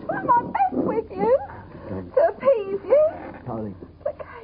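A woman's upset, tearful speech that the recogniser did not catch, her voice pitch sliding up and down in long glides.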